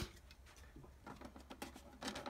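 Very faint light clicks and taps from fingers handling an opened metal card tin and its plastic tray; otherwise near silence.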